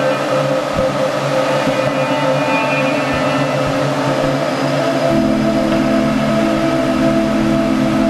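Background music of long held, slowly shifting notes. About five seconds in, deeper held notes and a low rumble come in beneath them.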